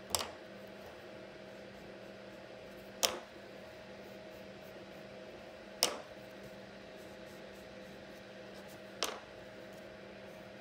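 Four sharp taps a few seconds apart, crayons being put down on and picked up from a wooden tabletop, over a steady low room hum.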